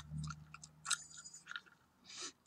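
Gum chewed close to the microphone: a few sharp smacks and clicks, over a low hum that fades out about halfway.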